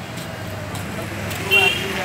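Street traffic: vehicle engines running with a steady low rumble, and a brief loud pitched tone about one and a half seconds in.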